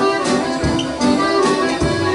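Live Scandinavian dance band playing an instrumental tune led by the accordion, with guitar and a drum kit keeping a steady beat.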